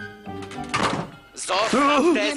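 Cartoon background music, with a door shutting with a thunk a little under a second in; about a second and a half in, a loud voice starts over the music.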